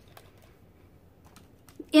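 Faint light plastic clicks and taps as a small water brush is set into the slot of a plastic watercolour palette.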